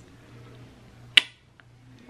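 A single sharp finger snap about a second in, short and crisp, followed by a faint tick.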